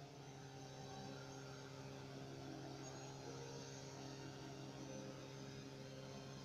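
Faint steady low hum of several held tones over a light background hiss: room tone.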